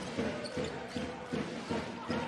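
A basketball dribbled on a hardwood court, bouncing about every half second, with faint voices in the hall.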